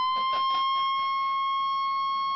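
NOAA weather radio receiver sounding its warning alarm, the 1050 Hz alert tone: one steady, high-pitched tone held without a break. It signals that a warning for severe weather or a civil emergency has been issued for the area.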